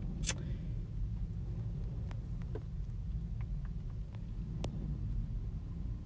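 Steady low rumble inside a car cabin, with a couple of faint clicks.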